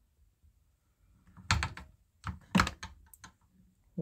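Walbro carburetor being lifted off a chainsaw by hand: a quick run of light clicks and knocks as it comes free, starting after about a second of quiet and stopping near the end.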